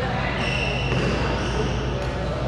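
Court shoes squeaking in long, high squeals on a badminton court mat, over distant chatter and a steady low hum in a large hall.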